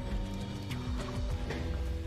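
Background music: sustained held notes over a low bass, with a few light percussive taps.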